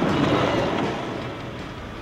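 Minivan driving past close by and slowing as it turns into a driveway: engine and tyre noise loudest in the first second, then fading away.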